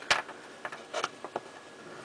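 Small clicks and taps of hard plastic model-kit parts, the hull and a wheel section of a 1:72 Sherman, being handled and offered up to each other: one sharp click just at the start, then a few lighter clicks.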